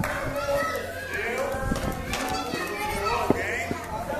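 Children talking and playing, their high voices going on throughout, with one short sharp knock a little past three seconds in.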